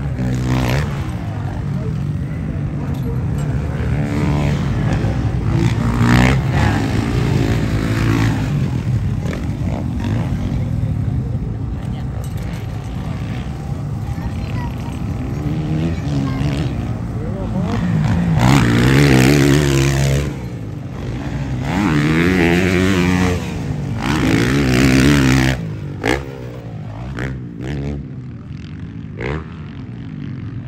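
Dirt bike engines on a motocross track, revving and accelerating with pitch repeatedly rising and falling as riders pass. The loudest passes come in the second half, and the engines drop away after about 26 seconds.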